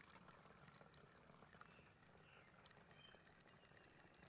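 Near silence: a faint trickle of white vinegar being poured from a bottle through a plastic funnel into a spray bottle.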